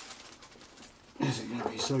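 A man's voice speaking over faint clicks and scrapes from two screwdrivers levering at a tight immersion heater boss; the voice comes in a little past the middle and is the loudest sound.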